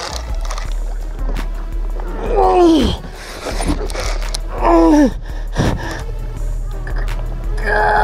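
Background music, with a man letting out three short groans as he strains against a big goliath grouper on the rod. Each groan falls steeply in pitch, about two and a half, five and eight seconds in.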